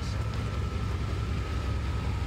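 1993 Chevrolet Silverado 1500 pickup's engine idling steadily: a low rumble with a faint steady whine above it.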